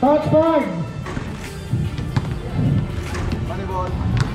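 Background music with a voice in the first second, then a few sharp knocks of basketballs being shot and bouncing on the court.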